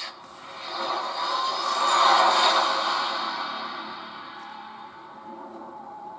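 Film trailer soundtrack: a swelling whoosh that builds to its loudest about two seconds in and then slowly fades, over quiet sustained score.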